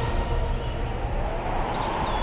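Outdoor background ambience: a steady low rumble, with thin, high bird chirps and whistles coming in over it near the end.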